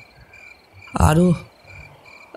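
Night-ambience sound effect of crickets chirping steadily, with one short frog croak about a second in.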